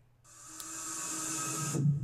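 Pack-opening sound effect from a digital collectible pack animation: a hissy whoosh with faint tones that swells over about a second and a half and then cuts off suddenly.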